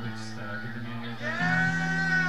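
Electric guitar strings ringing as the guitarist tunes between songs: sustained notes that jump to a new pitch partway through.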